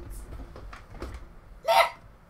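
Quiet room with the music stopped: faint short rustles and breath sounds as a man gets up out of a gaming chair, then one short exclaimed word near the end.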